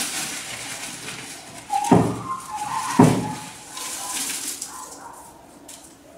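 Folded paper slips rustling as a hand stirs through them in a plastic bucket for a prize draw. Two sharp knocks come about a second apart, with a brief thin high tone between them.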